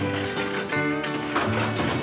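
Background music: an acoustic plucked-string tune over a bass line that steps from note to note.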